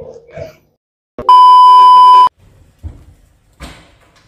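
A loud, steady electronic beep at one pitch, lasting about a second, followed by a few faint knocks and shuffling.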